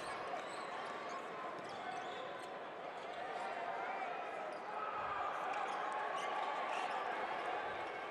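Arena sound of live basketball play: a steady murmur of crowd voices with the ball bouncing on the hardwood court, growing a little louder about halfway through.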